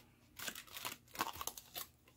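A piece of aluminium foil crinkling as it is handled, a run of irregular crackles, used as a foil wrap for an acetone soak-off of gel nail polish.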